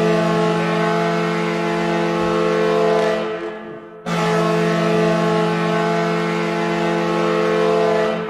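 An NHL arena goal horn recording sounding for a goal: one deep, steady blast that fades out about three and a half seconds in, then a second long blast from about four seconds on.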